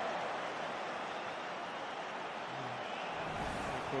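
Steady noise of a large stadium crowd during play, heard on the match broadcast.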